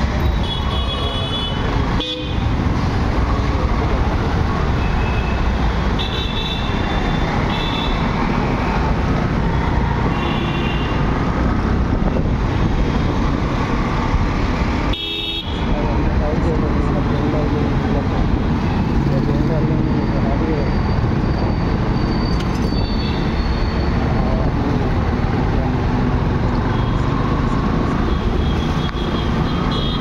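Dense city traffic: engines running and road noise close by, with many short horn toots from surrounding vehicles scattered throughout.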